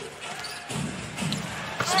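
A basketball dribbled on a hardwood court, with arena crowd noise underneath.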